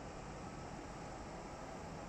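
Faint, steady hiss of room tone, with no distinct sound events.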